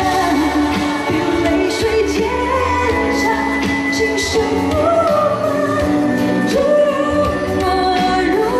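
A woman singing a pop song live into a handheld microphone over an instrumental backing with a steady bass line and light percussion.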